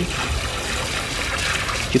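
Water jetting from a garden hose into a partly filled plastic bucket, a steady splashing rush, as the hose is run to flush it clean.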